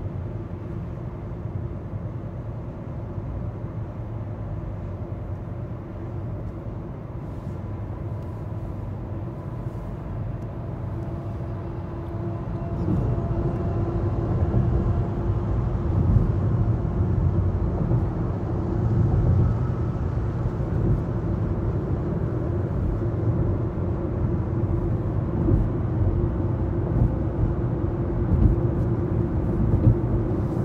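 Road noise of a car driving at highway speed, heard from inside the cabin: a steady low rumble that grows louder about twelve seconds in.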